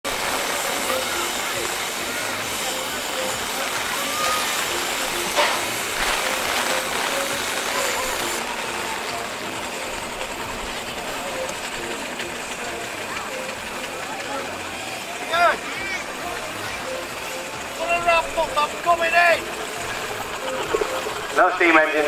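Steady outdoor wind-like noise, with a voice speaking in short bursts in the last several seconds.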